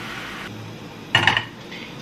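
Pancake batter poured into a hot buttered frying pan, sizzling at first and fading after about half a second. Just after a second in, a short loud clatter, with the glass bowl being set down.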